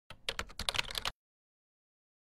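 Computer keyboard typing: a quick run of keystroke clicks lasting about a second, then stopping.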